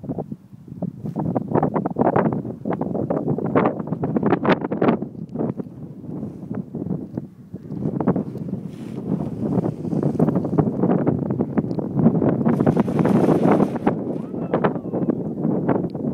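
Gusting wind buffeting the microphone: a loud, rumbling noise that rises and falls irregularly, with a stronger hissing gust about three-quarters of the way through.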